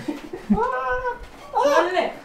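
A high-pitched, wavering whining cry from a person in two bursts, one about half a second in and a louder one near the end, with soft thuds beneath as the child hits the man's back.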